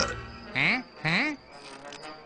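Two short buzzing tones, each rising in pitch, about half a second apart.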